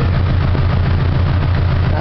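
Subaru flat-four engine idling steadily at about 900 rpm, heard from inside the car, with the air conditioning running flat out and its fan blowing.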